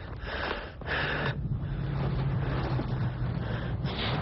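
A man breathing hard in short gasps for about the first second, then a car engine running with a steady low hum.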